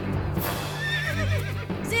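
A horse whinnying, a wavering high call about a second in, over background music.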